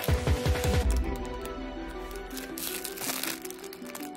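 Background music: a track with a steady thumping beat that drops out about a second in, leaving sustained melodic notes.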